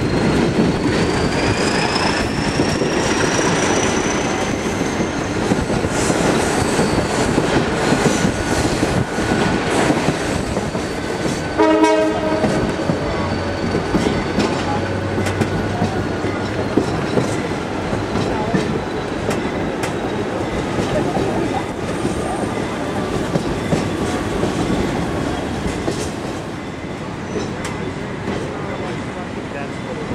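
Passenger train riding noise heard from aboard the car: a steady rumble and rattle of wheels on the rails. A high wheel squeal rises in pitch over the first few seconds, and a brief, sharp pitched sound comes about twelve seconds in.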